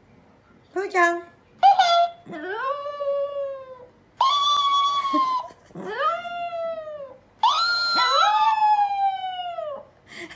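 A Chihuahua howling: two short yelps, then four long howls, each rising and then sliding down in pitch.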